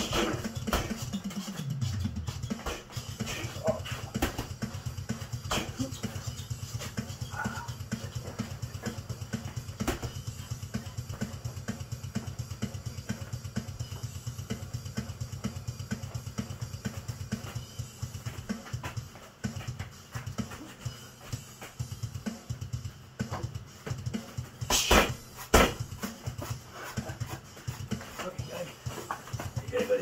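Gloved punches landing on punching bags, heard as scattered thuds, over steady background music with a repeating bass beat. Two louder impacts come near the end.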